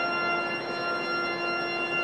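York Minster's pipe organ playing held high notes on lighter stops, a bright chord with little deep bass.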